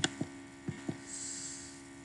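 Four short computer-mouse clicks within the first second, over a steady electrical mains hum on the recording.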